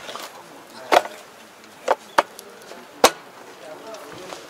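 Four sharp knocks as a hand handles the hard rear panel of a tractor: one about a second in, two close together around two seconds, and the loudest about three seconds in.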